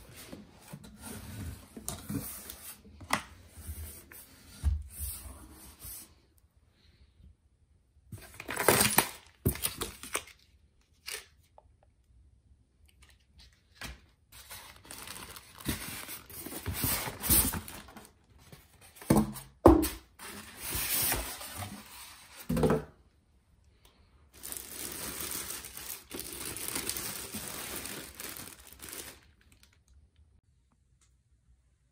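A printer's packaging being handled during unboxing: cardboard box flaps, styrofoam packing blocks and plastic wrap, in several spells of handling noise separated by short pauses, with a few sharper knocks.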